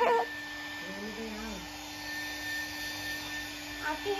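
Handheld hair dryer running steadily: a constant hum and thin high whine over the rush of blown air.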